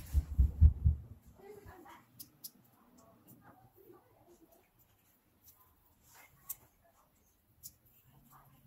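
Handling noises from the small parts of a compressor piston: a few low thumps in the first second, then scattered faint clicks and rustles.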